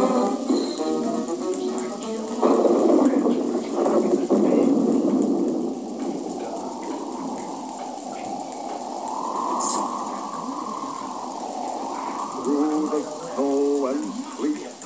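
Muffled, narrow-band TV-show audio: music with voices or singing at the start, a stretch of muffled noise without clear voices in the middle, a brief sharp sound about ten seconds in, and sung voices again near the end.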